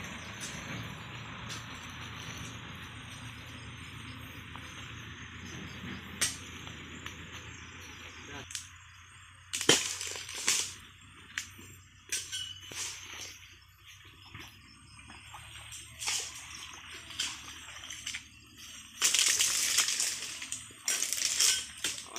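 Scattered sharp chops of a long-handled palm harvesting chisel (dodos) striking into the frond bases of a low oil palm, several in the second half, with a longer, louder noisy burst near the end. A steady rushing noise fills the first eight seconds or so, then stops.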